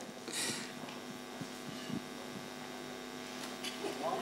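Steady electrical mains hum, a buzz of several even tones, with a brief hiss about half a second in.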